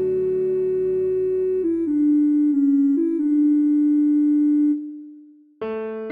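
Instrumental karaoke backing track of a slow ballad: a chord held under a fermata, then a short five-note melody phrase closing on a long note that fades out about five seconds in. Separate, slower notes start again just before the end.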